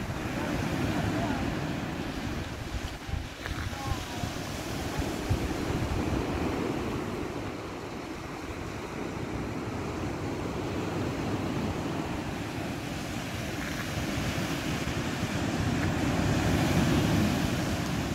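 Sea waves breaking and washing on a beach, with slow swells in loudness as the surf rises and falls, and wind buffeting the microphone.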